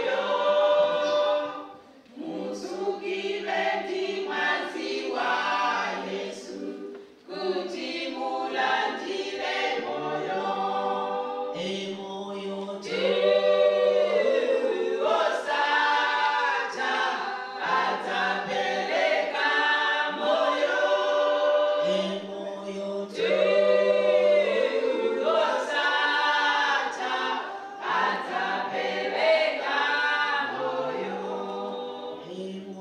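A church choir singing a cappella in several-part harmony, with a steady low bass part under the melody. The phrases run on with short breaks between lines, about two and seven seconds in.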